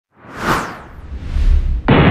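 Intro sound effects: a whoosh that peaks about half a second in, a deep rumble swelling beneath it, then a sudden loud hit just before the end.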